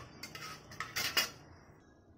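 A metal spatula clicking and scraping against the inside of an aluminium pressure cooker as whole spices are stirred in hot oil. There are a few sharp clicks in the first second and a half, then it dies away.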